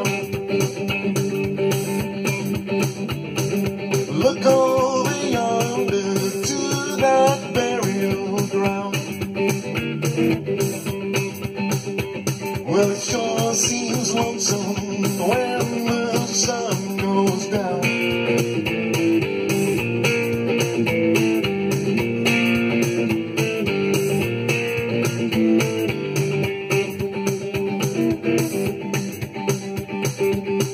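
Fender Nashville Telecaster electric guitar playing an instrumental blues break with bent notes over a steady beat. About eighteen seconds in, the playing shifts to fuller chording.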